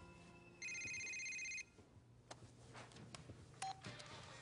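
A telephone ringing once: a trilling electronic ring about a second long, starting just after half a second in. A few faint clicks and a short beep follow.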